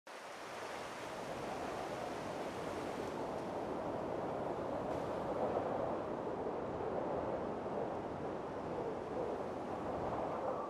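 Steady rushing sound of sea surf, fading in over the first second.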